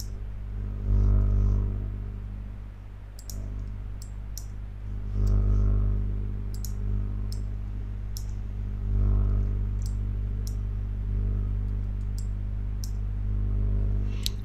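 Scattered short clicks of a computer mouse and keyboard, about fifteen in all, over a steady low hum that swells a few times.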